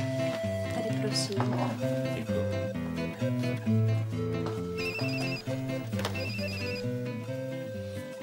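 Light guitar-led background music, with a mobile phone ringing over it: two short trilling ring bursts, about a second apart, a little past halfway.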